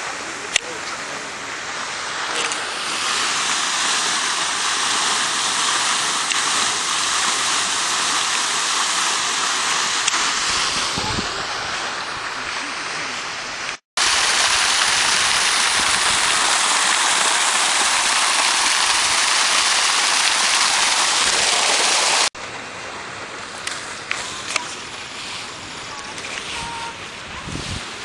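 Garden fountain jets splashing into a basin: a steady rush of falling water. It gets louder after a cut about halfway through, at a ring of arcing jets over a round pool, and drops away after another cut near the end.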